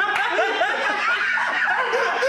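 Two men laughing together.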